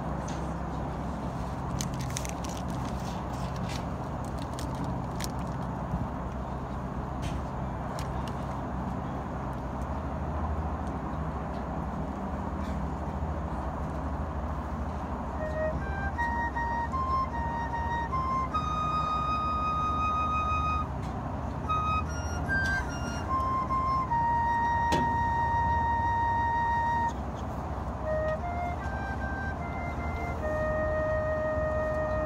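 The quiet opening of a marching band show: a steady low hum with faint high clicks for about half the time, then a solo flute plays a slow melody of single held notes, mostly rising in steps, with one long held note near the end.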